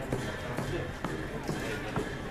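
Indistinct talking among several people, with a couple of short knocks, one near the start and one near the end.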